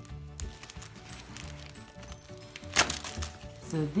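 Background music with a repeating low note pattern, and short crackles of the foil wrapper of a giant Kinder Surprise egg being handled, the sharpest about three quarters of the way through.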